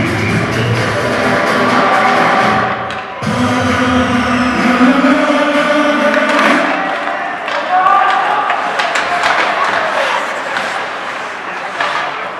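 Arena PA music playing over the ice rink, then dying away about six or seven seconds in as play resumes from a faceoff. After that come voices and sharp clacks of sticks and puck on the ice.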